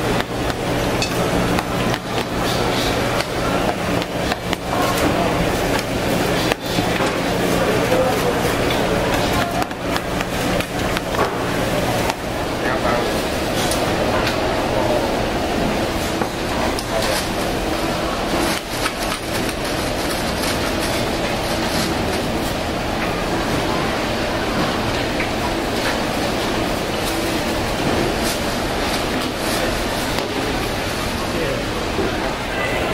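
Swordfish fish cakes deep-frying in large pans of hot oil, sizzling steadily, with metal and wooden utensils knocking and scraping against the pans. A low steady hum runs under the first part and stops about twelve seconds in.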